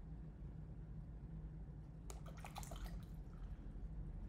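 Watercolour brush briefly swished in water: a short wet clicking splash about two seconds in, lasting about a second, over a faint steady low hum.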